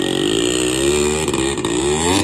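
Yamaha RX100's two-stroke single-cylinder engine labouring under load as the motorcycle tows a tractor. Its pitch sags a little, then climbs near the end.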